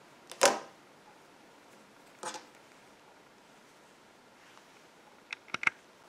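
Scissors snipping the yarn tail: one sharp short snip about half a second in, a softer one a little after two seconds, and a few faint clicks near the end, over quiet room tone.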